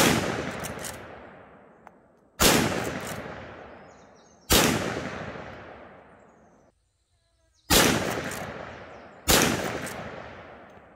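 Five shots from a .357 Magnum lever-action carbine, roughly two seconds apart. Each is a sharp crack followed by a long echo that dies away over about two seconds.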